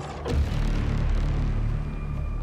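A sudden deep boom about a third of a second in, followed by a low rumble lasting about two seconds, over background music.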